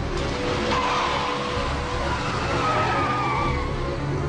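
Car tyres squealing as a sedan is driven hard through a turn, over engine noise; a long squeal that wavers up and down in pitch sets in about a second in and fades near the end. Film-score music plays underneath.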